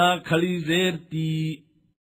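A man's voice reciting an Arabic letter with its zer vowel in a chanted, sing-song qaida drill: three held syllables on a nearly level pitch, stopping about a second and a half in.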